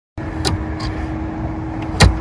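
Steady outdoor background rumble with a constant low hum. A couple of light clicks sound about half a second in and again shortly after.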